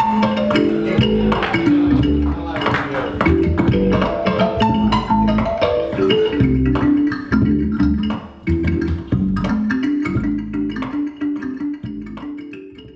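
Kalimba music: a quick stream of plucked notes over sustained low notes, at a steady loud level.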